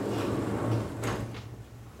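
Vertically sliding chalkboard panels being pushed along their tracks: a rumbling slide for about a second, then two knocks as the panels come to rest.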